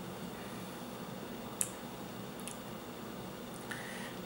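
Faint wet mouth clicks and lip smacks from someone tasting a mouthful of wheat beer, one sharper click about a second and a half in and a couple of smaller ticks later, over steady quiet room hiss.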